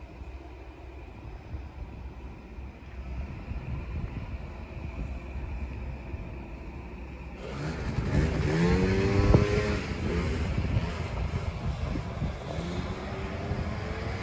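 A low steady rumble, then a motor vehicle's engine passing close by, its pitch falling, with another engine rising near the end.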